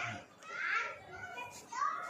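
A toddler's voice: two short, high-pitched vocalizations, not words the recogniser could write down.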